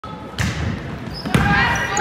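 A volleyball struck twice, about a second apart: two sharp hits that echo in a gymnasium hall.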